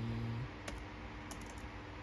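A few separate key presses on a laptop keyboard, letters being typed and deleted one at a time. A brief low hum sounds at the start and stops about half a second in.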